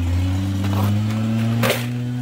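Leaf blowers running with a steady engine drone. A short knock or rattle about 1.7 s in.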